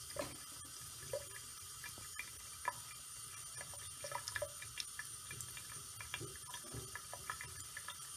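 A thin stream of water from a tap running into a sink: a steady splashing with many small, irregular drip ticks.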